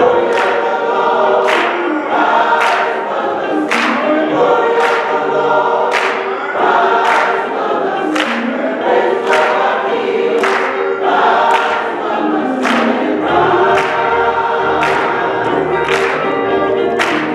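A choir singing a gospel song with electric guitar accompaniment, a sharp beat struck about once a second.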